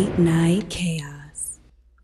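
A voice saying a few short words, partly whispered, with hissing high sounds, fading to near silence about a second and a half in.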